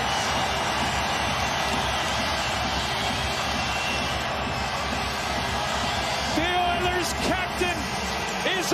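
Arena crowd cheering steadily after a home-team goal, a dense roar with no break. A voice calls out over the crowd in the last two seconds.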